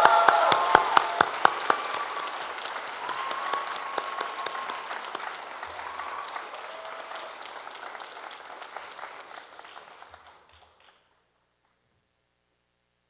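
Audience applauding, loudest at the start with a few sharp nearby claps, then tapering off and dying away near the end.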